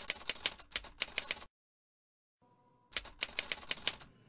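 Two quick runs of sharp clicks, about seven a second. The first run stops about a second and a half in, and a second shorter run comes near the end.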